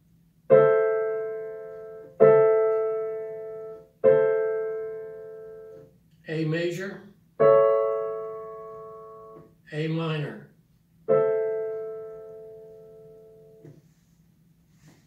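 Digital piano playing five three-note triad chords one after another, each struck once and left to ring and fade: A major and A minor triads, the minor one with C natural in place of C sharp in the middle. A short spoken phrase falls between the third and fourth chords and another between the fourth and fifth.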